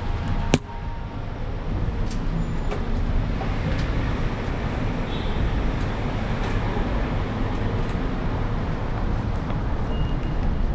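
2004 Yamaha V Star 1100's air-cooled V-twin running steadily in a parking garage, with a sharp click about half a second in, after which the sound dips briefly and builds back.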